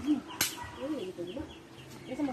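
Chickens clucking, with a high, rapid chirping that repeats about five times a second, and a sharp click about half a second in.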